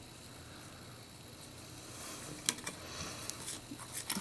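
Faint handling of a clear plastic packaging tray as a fabric wrist loop is pressed back into it: little sound at first, then a few light clicks and taps of plastic in the second half.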